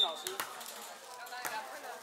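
Volleyball knocks: a sharp hit right at the start, then a few lighter knocks, over the chatter of players and spectators on an outdoor court.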